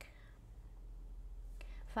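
A soft breath right at the start, then a faint steady low hum in a pause between spoken sentences.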